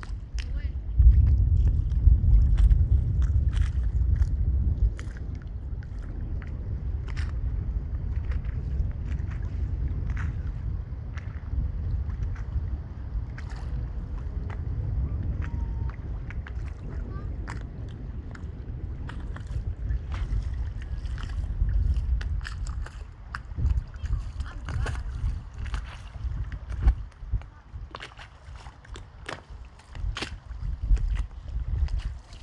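Wind buffeting the microphone in a steady low rumble, heaviest in the first few seconds, over small waves lapping and splashing in shallow water with many little ticks and splashes.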